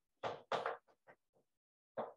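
Chalk writing on a blackboard: a few short chalk strokes and taps, the first two loudest and the later ones fainter, stopping about a second and a half in.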